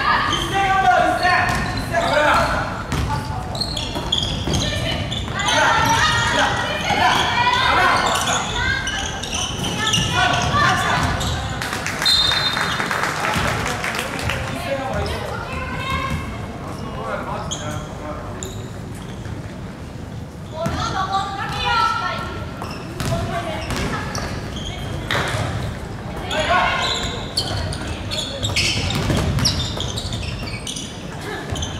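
Live basketball game sound in a gymnasium: a basketball bouncing on the wooden court amid players' and bench shouts and calls.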